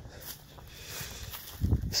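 Footsteps on dry grass, with a low rumble of wind on the microphone building near the end.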